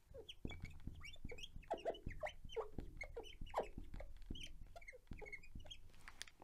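Faint squeaking of a felt-tip marker on a glass lightboard during handwriting: a run of short squeaks and light taps, one per stroke.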